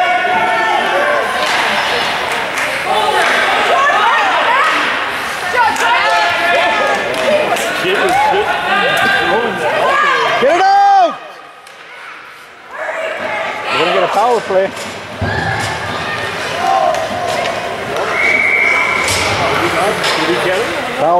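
Spectators talking and calling out in an echoing ice arena during a youth hockey game, with scattered sharp knocks of sticks, puck and boards. The voices drop away briefly about halfway through, and a short steady high tone sounds near the end.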